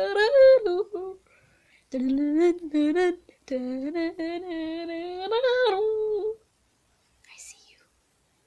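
A person humming a tune in long held notes, in three phrases with short breaks about a second and about three and a half seconds in, stopping about six seconds in. A brief faint high sound follows near the end.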